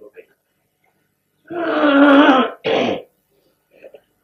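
A man's voice making one loud, drawn-out sound with a falling pitch about a second and a half in, quickly followed by a short rough burst like a throat clear. It is louder than the talk around it.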